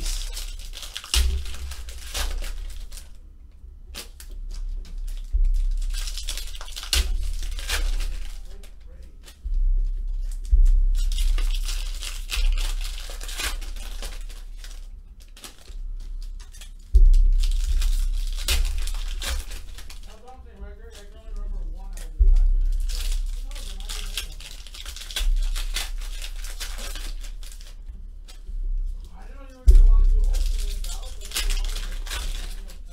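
Foil trading-card pack wrappers crinkling and tearing, and cards being shuffled and sorted by hand, in repeated bouts with sudden low thuds of handling against the table.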